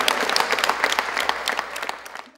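A group of people applauding with dense, irregular hand claps that fade out near the end.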